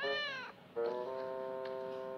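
A cartoon cat's meow, rising then falling in pitch, about half a second long. Under a second in, a steady held note of background music starts.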